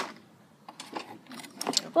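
A few light clicks and taps of handling noise as the phone is moved over a glass tabletop, scattered through the second second, with a voice starting at the very end.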